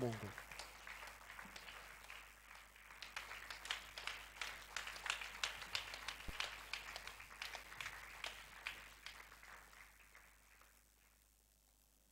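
Church congregation clapping, faint: a dense patter of hand claps that swells a couple of seconds in and dies away near the end.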